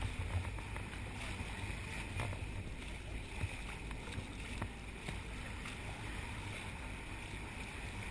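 Steady rush of the sea along the bow of a boat under way, with a low rumble of wind on the microphone and a few faint splashes.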